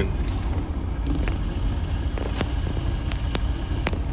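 A steady low rumble with a few light clicks scattered through it.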